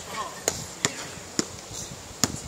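Basketball bouncing on an outdoor hard court: three sharp smacks, the first about half a second in and the others spread over the next second.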